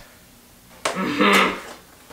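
A sharp click, then a short strained grunt of effort, a little over a second in, from someone forcing scissors into a cardboard box.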